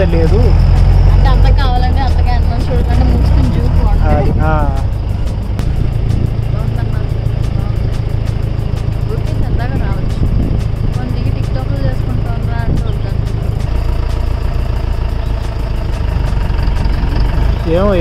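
Safari jeep engine running as the open-sided vehicle drives along, heard from inside with wind buffeting the microphone as a loud, steady low rumble.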